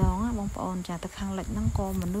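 A person's voice in short held notes that step up and down in pitch, like singing, over a steady low rumble and a faint steady high whine.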